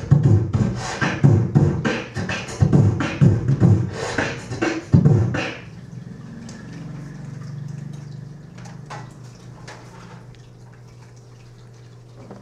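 Beatboxing into a handheld microphone: quick rhythmic vocal kick and snare beats that stop about five and a half seconds in. After that comes a low steady hum with a few faint clicks.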